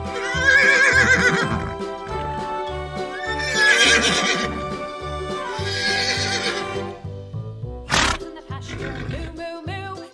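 Horse neighing: three long, wavering whinnies, about a second in, about four seconds in and about six seconds in, over background music with a steady beat.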